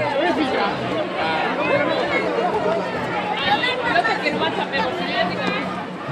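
Chatter of a walking crowd of small children and adults: many voices talking at once, overlapping, with no single speaker standing out.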